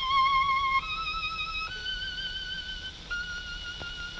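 A solo violin playing slow, held notes with vibrato in a song's instrumental introduction. The melody steps up twice over the first two seconds, then holds.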